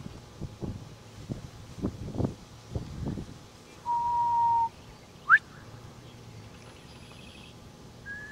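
A held whistled note lasting almost a second and falling slightly, then a moment later a short, sharp rising whistle, the loudest sound here. A few soft low thumps come before them.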